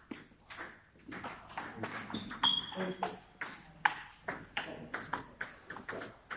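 Table tennis rally: the ball clicking sharply off the bats and the table in a quick, irregular series of strikes.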